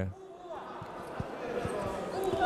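A quick irregular series of dull thuds from two boxers moving on the ring canvas and exchanging punches, under faint voices in the hall.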